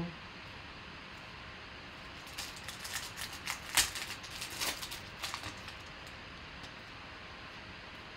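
Plastic wrapper of a football trading-card pack being torn open and crinkled by hand: a run of short crackles starting about two seconds in and dying away after about five, the sharpest one near the middle.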